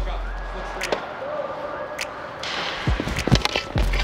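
Ice hockey rink sounds: sharp cracks of sticks hitting pucks and pucks striking the boards, several in quick succession near the end, over background music.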